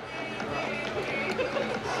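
Indistinct voices of onlookers with music in the background over a steady low hum, growing slightly louder.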